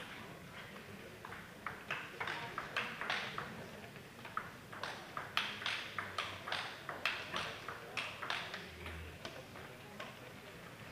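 Table tennis ball clicking off bats and table in quick succession, about three clicks a second, in two runs with a short break near four seconds in. The clicks ring slightly in a large sports hall.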